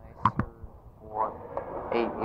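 A pause in a taped interview: two short clicks in quick succession, then a woman's voice resumes speaking about a second in.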